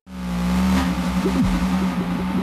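A car driving at speed on a highway, heard from inside the cabin: steady road and wind noise with a low engine hum.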